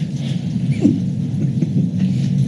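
Low murmur of voices with light scratchy rustling.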